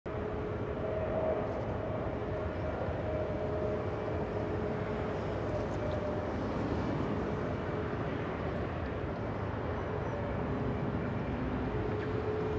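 Airbus A380's four Rolls-Royce Trent 900 jet engines on final approach, a steady rumble with a faint steady tone in it.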